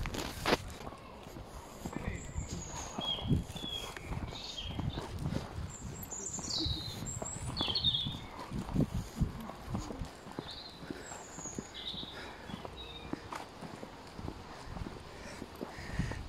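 Footsteps walking along a paved path, with short bird chirps above them now and then.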